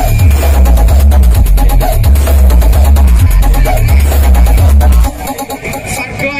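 Electronic dance music with heavy, pulsing bass, played very loud through a large outdoor sound system. The music cuts off suddenly about five seconds in.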